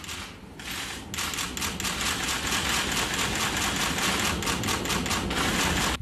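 Many camera shutters clicking in fast, overlapping bursts, a dense clatter that starts about a second in.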